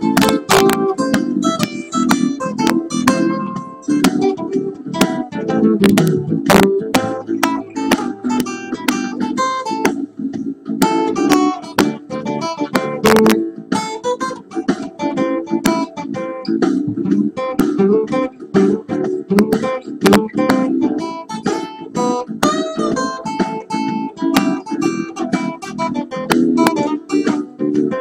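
Acoustic guitar played solo in a blues style: picked notes mixed with sharp strummed strokes, continuing without a break.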